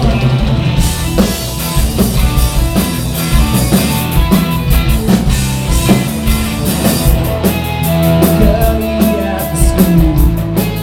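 Live rock band playing loud, with electric guitars, bass and a drum kit keeping a steady beat; the cymbals come in thicker about seven seconds in.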